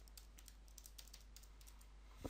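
Near silence, with faint, quick clicks of keys being pressed.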